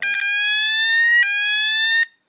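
Roshni fire alarm sounder powered from a 9 V battery, sounding the moment it is connected the right way round. Its loud electronic tone rises slowly in pitch, drops back a little over a second in, and rises again.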